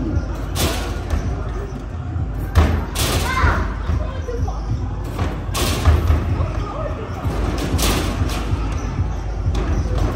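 Basketballs thudding against the backboard and rim of an arcade basketball shooting machine, several shots a couple of seconds apart, over a loud arcade background of voices and machine music.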